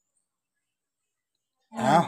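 Dead silence, then near the end a short, loud vocal sound from a person, a brief drawn-out vowel or grunt.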